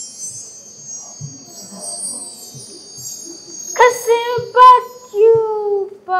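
Shimmering chime sound effect, a high twinkling cue for a magic spell, lasting about four seconds. Then a child's voice calls out loudly twice, with a longer falling call near the end.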